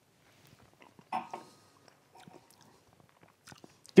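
Quiet mouth sounds of a person sipping and tasting white rum from a tasting glass: a short sip about a second in, then faint lip and tongue clicks near the end.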